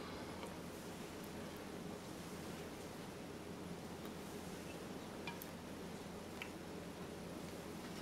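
Quiet kitchen room tone with a faint steady hum, and a few faint soft ticks from hands laying cooked lasagna noodles into a glass baking dish.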